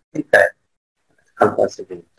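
A man's voice making short wordless vocal sounds: two brief voiced bursts right at the start, then a cluster of short murmured sounds near the end.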